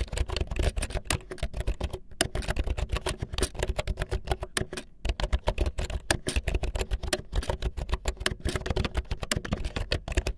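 Fast typing on a mechanical keyboard with Cherry MX Black linear switches: a dense, rapid run of keystrokes with brief lulls about two and five seconds in.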